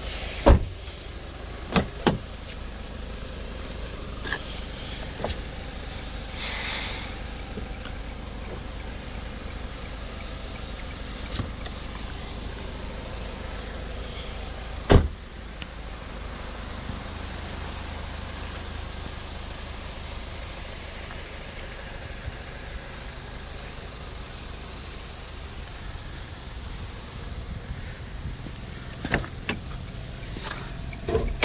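Car doors of a Kia Morning hatchback being handled: a sharp door-closing thump about half a second in, a few lighter clicks of the latch and handle, and a loud door slam about halfway through, over a steady low rumble.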